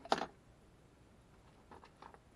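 A pastel pencil being put down: a sharp clatter just after the start, then a few faint light clicks near the end.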